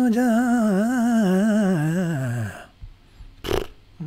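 A man's voice singing a quick vocal run, the pitch wobbling rapidly up and down, then sliding down and stopping about two and a half seconds in. A short breathy noise follows near the end.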